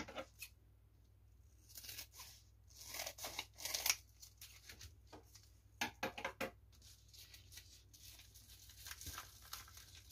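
A padded plastic mailer being handled and torn open by hand: short, scattered bursts of crinkling and tearing with quiet gaps between.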